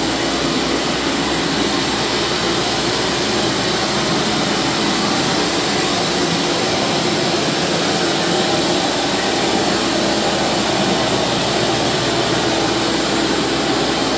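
A Dirt Dragon compact walk-behind floor scrubber running steadily as it cleans a luxury vinyl plank floor, its motor noise loud and even.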